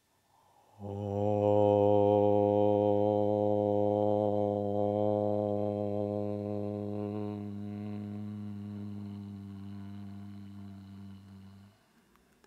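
A man chanting a long, low om on one steady pitch, held for about eleven seconds and slowly fading before it stops near the end.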